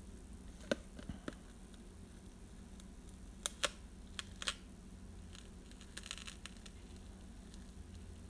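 Fingernails picking at a tape seal on a metal trading-card tin: a few scattered sharp clicks and taps, with a faint scratchy peel about six seconds in, over a low steady room hum.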